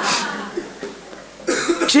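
A person coughing: a short cough at the start and another about one and a half seconds in, with speech resuming right after it.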